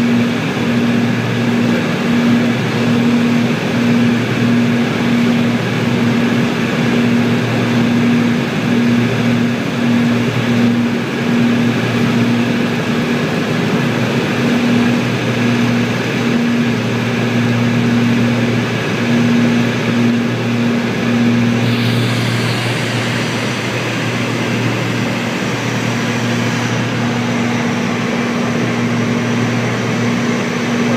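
Cabin drone of a Piper Seneca III's twin propeller engines in cruise on approach, a steady low hum with a slow, regular throbbing beat, the sign of the two engines turning at slightly different speeds. About two-thirds of the way through, a higher hiss of airflow grows louder.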